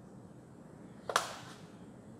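A single quick chalk stroke on a blackboard, a short swish about a second in, over faint room tone.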